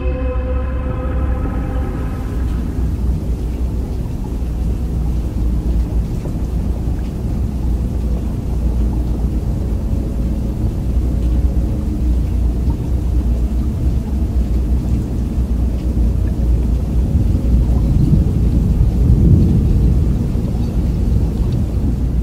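Music fades out in the first few seconds, followed by a loud, steady low rumble with no clear pitch that swells briefly near the end.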